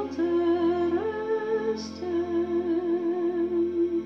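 A woman singing long held notes with vibrato and no words, over a soft sustained backing track; the note steps up about a second in and drops back a second later, then holds.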